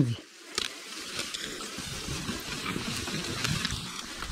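KTM 200 EXC two-stroke enduro bike going down a steep slope of dry leaves: a steady rustling, sliding noise of tyres through the leaves, with the engine running low underneath. It starts about half a second in.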